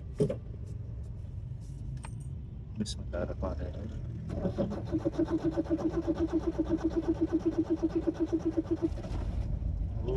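Starter motor cranking the engine of an old Nissan B12 in a start attempt, with a fast, even chug for about four and a half seconds before it is released, with no sign of the engine catching. A few key clicks come before it.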